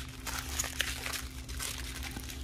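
Small plastic zip bags of diamond-painting drills crinkling and rustling in irregular little handling noises as they are picked up and shuffled around.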